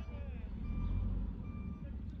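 Two short electronic beeps, evenly pitched and a little under a second apart, over a steady low rumble.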